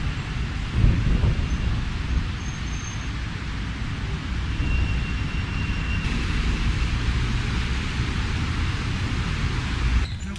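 Outdoor city ambience: a steady wash of road traffic noise, with wind rumbling on the camera microphone.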